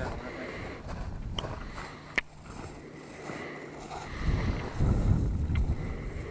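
Wind buffeting the camera microphone in rough low gusts, strongest about four to five seconds in, with a single sharp click about two seconds in.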